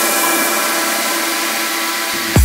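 Techno track in a breakdown, with the kick drum and bass dropped out: a steady hiss of filtered noise over held synth tones.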